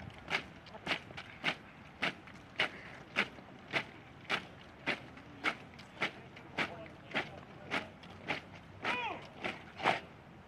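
Massed soldiers' boots striking paving stones in unison while marching in step, a sharp crack nearly twice a second. A brief call rises and falls in pitch near the end.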